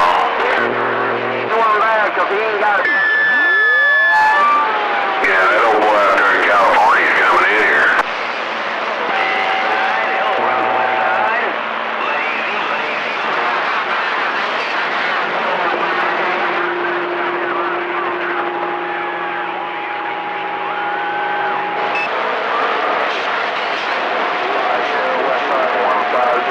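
CB radio receiver on channel 28 (27.285 MHz) hearing distant skip stations: a steady hiss of static with garbled, unintelligible voices and steady heterodyne whistles that come and go, one whistle sweeping in pitch early on.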